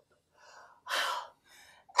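A woman gasping for breath: one sharp gasp about a second in, with fainter breaths before and after it.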